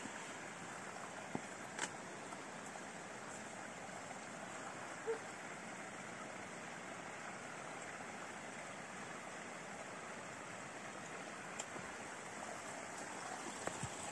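Steady, even rushing of a mountain stream, with a few faint clicks over it.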